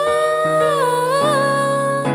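A young female voice sings a held, slowly sliding melody line with vibrato over sustained piano chords, which change twice.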